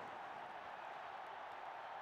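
Faint, steady roar of a stadium crowd cheering.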